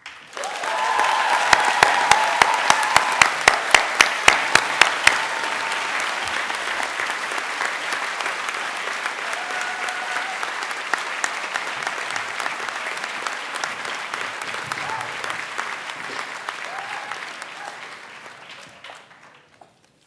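Audience applause that builds quickly and holds steady, with one person's loud, evenly spaced claps, about three a second, standing out over the first few seconds; the applause fades away near the end.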